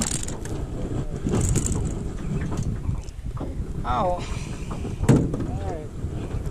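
Irregular low rumble of wind buffeting the microphone, with a sharp knock near the start and another about five seconds in.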